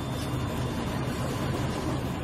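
Steady low rumble of room noise, with no distinct events.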